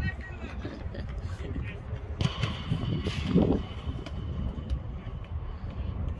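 Players shouting across a football pitch over a steady low rumble, with a loud high-pitched call about two seconds in.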